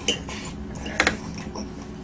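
Metal fork clicking against a plate a few times while cake is cut and picked up, the sharpest click about a second in.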